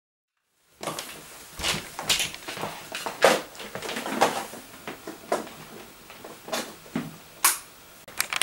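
Silence, then from about a second in a run of irregular clicks and knocks, about a dozen over several seconds, in a small room.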